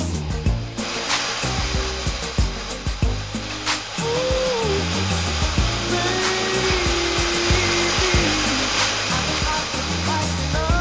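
Background music: held melody notes gliding in pitch over scattered percussive hits and a dense noisy backing.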